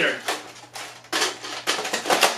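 Hard plastic Nerf blaster parts knocking and clicking together as the blaster is handled and its attachments are fitted: several separate clacks with short gaps between them.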